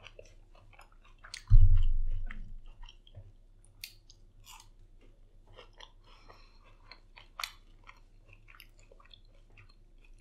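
Close-mic chewing of a crunchy Flaming Hot Cheetos-coated fried pickle, with many small crisp crunches and mouth clicks. A loud low thump comes about one and a half seconds in.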